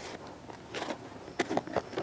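Cardboard shipping box being handled and opened by hand: a few short scraping and rustling sounds, about a second in and again near the end.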